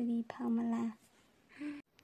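Speech only: a voice speaks a short phrase in the first second, then pauses.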